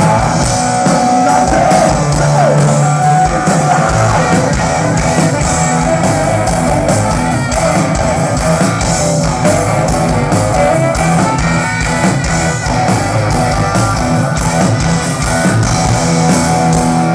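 Rock band playing live and loud: electric guitar over a drum kit in an instrumental passage, with no singing.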